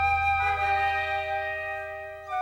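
Orchestral film-library music: held notes over a low sustained bass note. The chord shifts about half a second in, and the music gets quieter toward the end.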